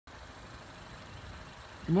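Faint, steady outdoor background noise: a low rumble with light hiss. A man's voice starts right at the end.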